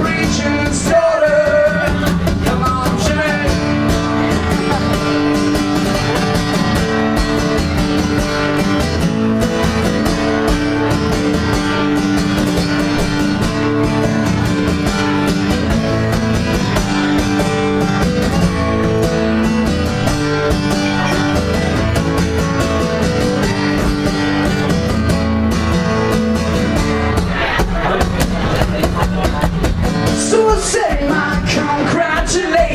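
Guitar strummed in a steady rhythm, playing an instrumental passage of a solo live song, with a voice singing briefly about a second in and again near the end.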